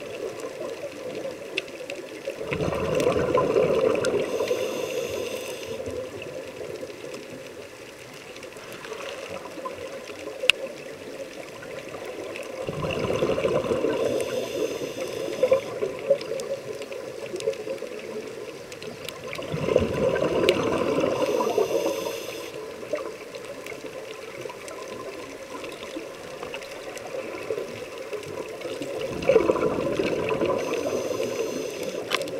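Scuba regulator breathing underwater: four long exhalations of rushing bubbles, about seven to eight seconds apart, with quieter hiss between.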